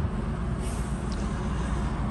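Steady low mechanical hum and rumble, with two faint light ticks about a second in.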